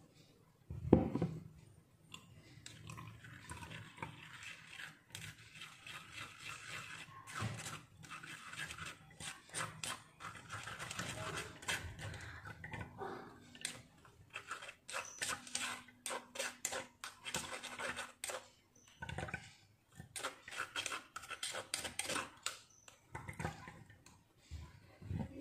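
Rapid scraping and clicking against a small stainless-steel mesh strainer as blended turmeric and ginger pulp is worked through it into a glass. A single heavy thump about a second in is the loudest sound.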